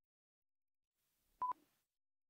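A single short electronic beep at a steady mid pitch, about one and a half seconds in: the tick of a quiz countdown timer, which beeps once a second.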